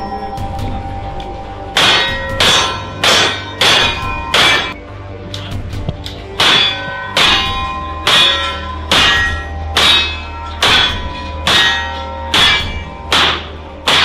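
Single-action revolvers fired in quick succession at steel targets, about one shot every 0.6 seconds, each shot followed by the ringing clang of the struck steel. Five shots, a pause of about two seconds, then a longer string of shots.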